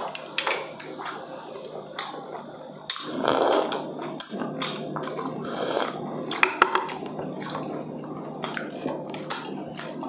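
Close-miked eating sounds: chewing and mouth noises, with many short clicks and taps of a spoon and fingers on plates, busiest about three seconds in.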